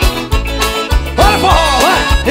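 A live arrocha band plays an instrumental passage with a steady bass and drum beat under accordion and electric guitars. A little over a second in, a melody line with sliding, bending notes enters over the beat.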